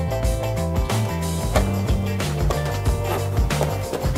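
Background music with a steady beat and a bass line that moves from note to note.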